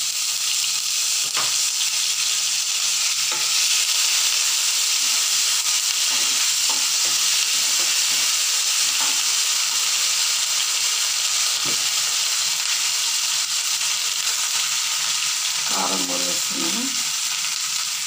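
Mutton pieces sizzling steadily in hot oil with onions and ginger paste in a non-stick pan as they are stirred. A few sharp clicks of the spoon against the pan come through.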